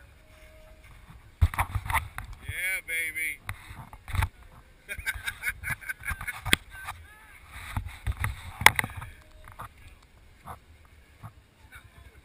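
Voices shouting and whooping outdoors, mixed with irregular thumps and scuffs against the action camera's microphone; the loudest thumps come about a second and a half in and again near four, six and a half and nine seconds.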